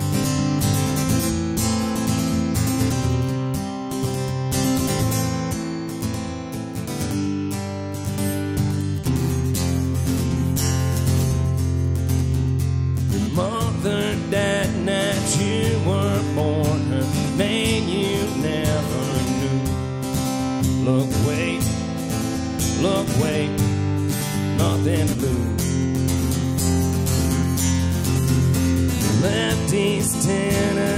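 Solo acoustic guitar strummed in a steady pattern, and a man starts singing along with it about thirteen seconds in.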